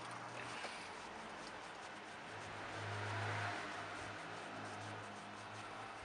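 Caustic soda solution fizzing and crackling in a steel bike frame's seat tube as it eats away an aluminium seat post, giving off hydrogen. A broader swell of noise with a low hum rises and fades around the middle.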